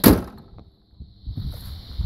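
The hood of a 2002 GMC Sonoma pickup slammed shut: one sharp metal bang right at the start that dies away within half a second.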